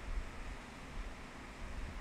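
Faint, steady background hiss with a low hum: the noise floor of a home voice recording between spoken phrases.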